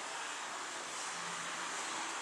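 Steady, even background hiss of wind, with no distinct events.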